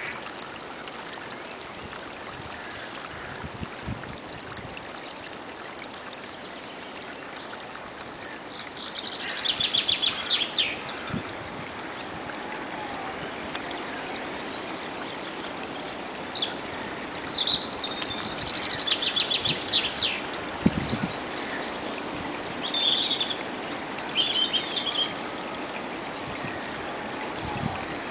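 A small woodland brook running steadily over mud and leaf litter. A songbird sings over it in three bursts of fast, trilled high phrases, about eight, sixteen and twenty-three seconds in.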